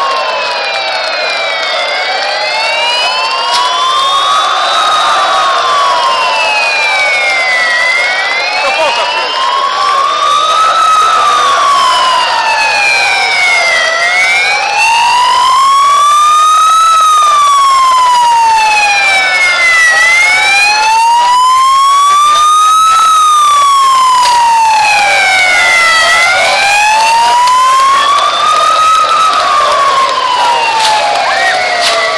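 Wailing siren, its pitch rising and falling slowly in a steady cycle of about six seconds.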